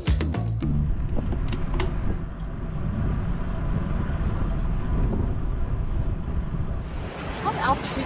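Background music cuts off in the first half-second. A steady low rumble of wind buffeting a microphone follows, and near the end it turns to a brighter, fuller rush with a brief voice.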